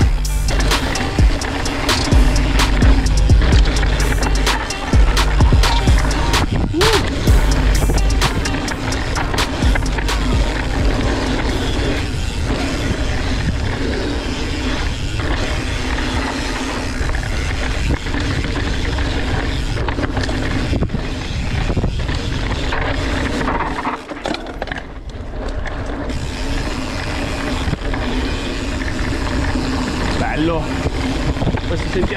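Scott Spark full-suspension mountain bike rolling fast down a rough dirt and rock trail, its tyres and frame rattling and clattering over the ground, under background music with a steady bass line.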